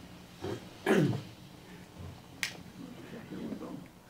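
A man clearing his throat once, loudly, about a second in, then a single sharp click about halfway through.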